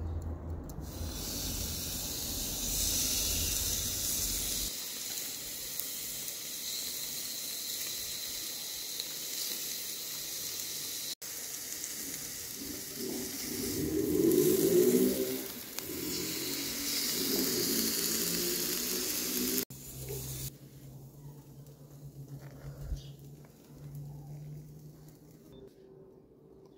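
Beef steak sizzling on a hot cast-iron grill grate over charcoal: a steady hiss, swelling louder about halfway through as the steak is turned with tongs. After a cut the sizzle stops, leaving quieter sounds and a small knock as the grilled steak is sliced on a wooden cutting board.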